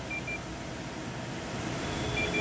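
Fluke 115 digital multimeter's continuity beeper giving a brief, broken chirp near the start as the test lead tips touch, over a steady background hiss. The beep signals a closed circuit through the leads, confirming they are good.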